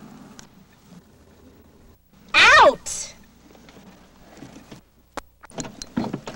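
A person's loud cry, about half a second long and falling steeply in pitch, followed by a shorter second burst. A few sharp clicks and knocks come near the end.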